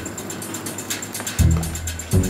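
Background music with a steady beat: quick light percussion ticks, with a deep bass note coming in near the end.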